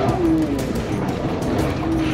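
Music playing over crash noise: a motorcycle and its debris skidding and scraping across pavement just after hitting a van.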